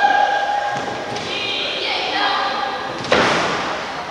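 A single loud thud on the wrestling ring mat about three seconds in, ringing briefly in a large hall, over people's shouting voices.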